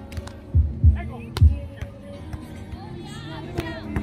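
Beach volleyball rally: a few sharp slaps of hands and forearms on the ball, the loudest about a second and a half in, over irregular low thuds.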